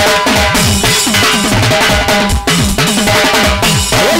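Juju band music in an instrumental stretch, with drums and percussion to the fore over sustained melodic tones and a steady beat.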